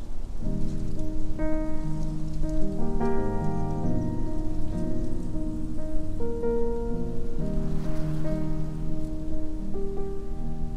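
Solo piano playing held chords over a moving bass line in a pop ballad arrangement, over a steady low noise haze.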